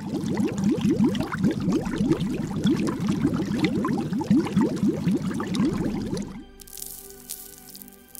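Produced liquid sound effect of bubbling and dripping, a rapid run of short rising blips, set with music. About six and a half seconds in it changes to a sustained musical chord with a glittering, sparkling shimmer.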